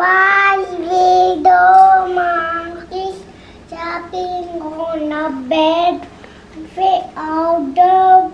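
A young boy singing in a high, sing-song voice, in short phrases of held notes with brief breaks between them.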